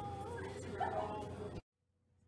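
A person's high-pitched whimpering, yelping voice with short rising and falling glides over a steady hum, cut off abruptly by an edit about one and a half seconds in.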